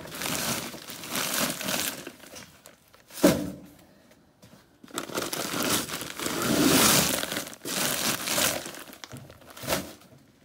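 Broken brick rubble being scraped and loaded into a metal wheelbarrow: gritty scraping and crunching in bursts of about a second, with one sharp knock about three seconds in.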